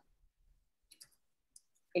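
A few faint clicks at a computer, a pair about a second in and one more a little later, over otherwise near-silent audio.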